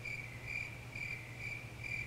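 Insect chirping steadily, a little over two high chirps a second, over a faint low steady hum.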